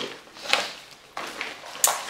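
Plastic makeup packaging being handled and set down: three short taps and clicks, the last one sharp, near the end.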